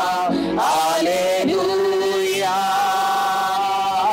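A woman and a man singing slow devotional worship in Tamil, holding long notes and gliding between them.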